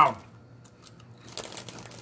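The tail of a man's spoken word, then a quiet room with a few faint soft clicks about one and a half seconds in.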